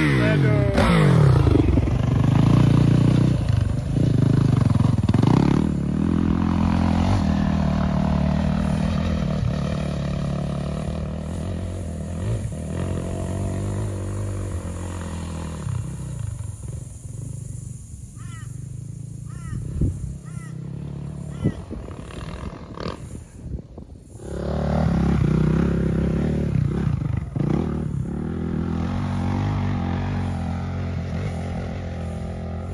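Dirt bike engine passing close with a sweep in pitch, then running on and fading into the distance. About 24 s in the engine comes back louder, pulling as the bike climbs a steep dirt hill trail.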